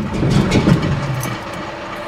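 Old Chevy Nova's engine running just after being jump-started from a long sit, with a steady, slightly uneven rumble.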